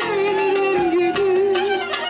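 A woman singing one long, wavering held note into a microphone over instrumental backing.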